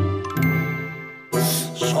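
Short cartoon music sting of chiming, bell-like tones that ring and fade, cut off suddenly about a second and a quarter in. A brief, brighter burst of sound follows.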